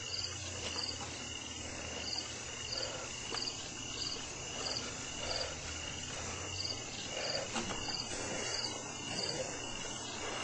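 A cricket chirping steadily, short high chirps repeating about every two-thirds of a second, over a constant recording hiss.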